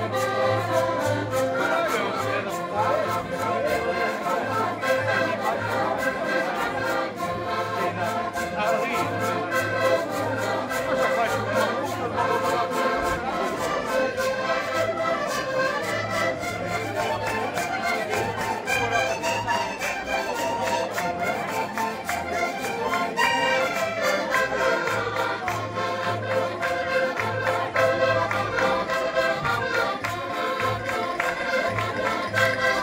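Several accordions playing a traditional folk tune together, continuous, with a recurring low bass pulse under the melody.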